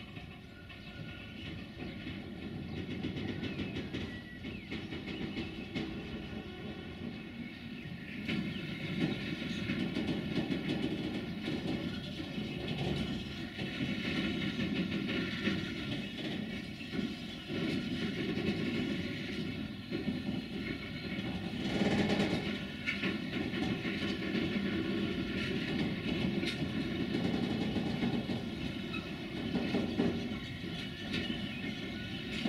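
Container freight train wagons rolling past, their wheels clicking rhythmically over rail joints, with a steady rumble that grows somewhat louder about a third of the way through.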